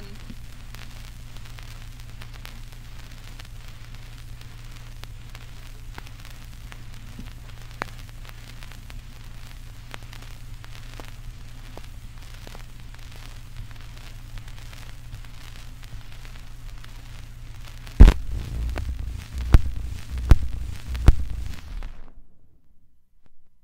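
Surface noise of a 78 rpm home-recording acetate disc: a steady low hum and hiss with scattered clicks and crackle. About 18 seconds in comes a run of loud thumps and crackles, and then the sound cuts off suddenly.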